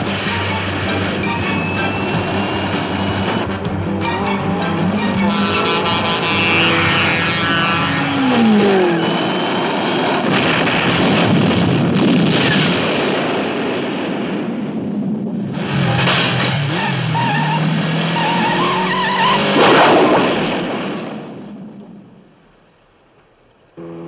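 Action-film soundtrack mix: dramatic music over vehicle engine noise and a rocket-propelled motorcycle sidecar, with an explosion about halfway through. The sound fades away near the end.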